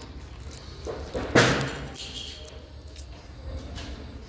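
A single sharp knock about a second and a half in, over the steady low hum of a large store.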